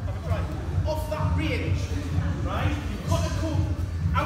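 Indistinct voices over background music with a steady, pulsing bass.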